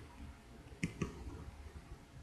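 A computer mouse double-clicked: two sharp clicks a fraction of a second apart, about a second in.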